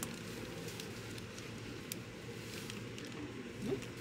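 Quiet indoor room tone: a steady low background hum with a few faint small clicks, and a brief spoken word near the end.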